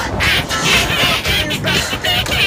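Yellow plastic duck-bill quacker whistles blown by several people, a quick string of kazoo-like quacks over loud music.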